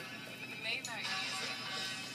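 Faint background music with distant voices. A short cry that falls in pitch comes just under a second in.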